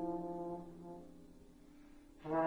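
Trombone holding one low, sustained note that fades away over about a second and a half.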